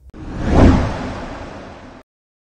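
Transition whoosh sound effect between news stories: a noisy swell with a deep rumble that peaks about half a second in, then fades away and cuts off.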